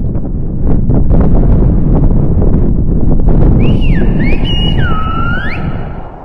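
Loud wind buffeting the microphone. A little over halfway through, a person whistles a short run of sliding notes that dip and rise, lasting about two seconds.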